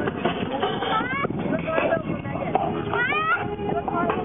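Indistinct voices of people talking, with two short high rising whistle-like calls, one about a second in and one about three seconds in.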